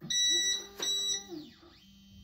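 Voxelab Proxima resin printer beeping as its home button is pressed, a high beep lasting about a second, while its Z-axis stepper motor starts a steady low hum, driving the build plate down to the home position.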